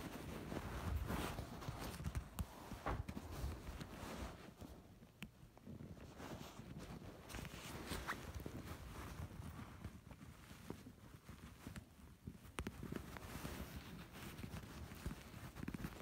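Faint handling noise: rustling and scattered light clicks as a toy cast is worked onto a doll's leg.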